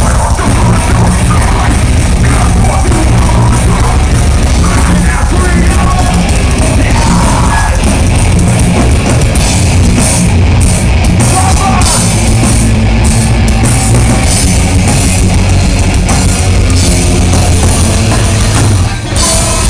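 Heavy metal band playing live and loud, with distorted electric guitars, bass guitar and a drum kit.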